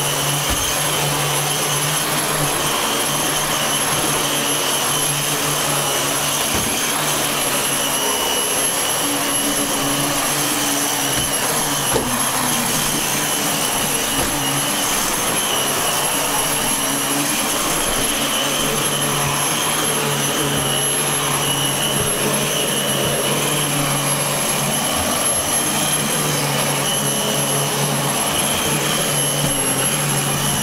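Dyson DC15 The Ball upright bagless vacuum cleaner running steadily on carpet: a high whine over rushing air, with a low hum that fades and comes back several times as it is pushed about.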